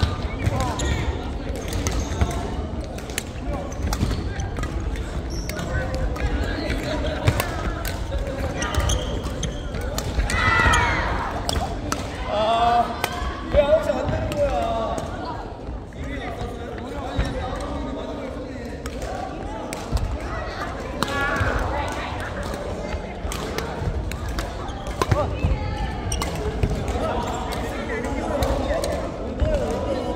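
Badminton play in a large gymnasium: repeated sharp racket hits on the shuttlecock and footfalls on the wooden court. Players' voices call out, most strongly around the middle.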